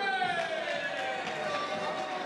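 A long, drawn-out cheer from one high voice, falling slowly in pitch, as a goal goes in past the goalkeeper, with other voices murmuring in a sports hall.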